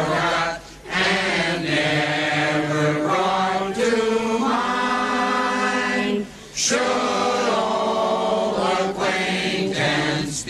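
Choral singing in long held notes, laid over as background music, with two short breaks about half a second in and after about six seconds.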